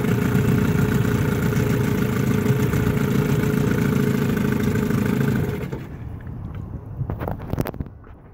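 1975 Evinrude 15 hp two-stroke outboard motor running steadily, then shut off a little past halfway, its sound dying away quickly. A few knocks follow near the end.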